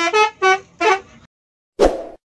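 A multi-tone telolet bus horn playing a quick tune of short notes that change pitch, stopping a little over a second in. A short burst of noise follows near the end.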